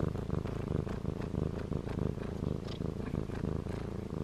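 A domestic cat purring steadily right up against the microphone, a fast, even low rumble.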